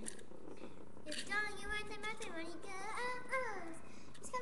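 A child's voice singing or vocalizing without clear words, the pitch gliding up and down, starting about a second in and stopping shortly before the end.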